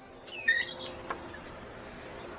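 A door squeaking briefly as it is pushed open, with a wavering high squeal lasting about half a second, then a light click about a second in.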